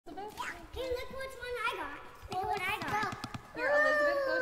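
Young children's high-pitched voices chattering and calling out, without clear words. Near the end one long call slides down in pitch.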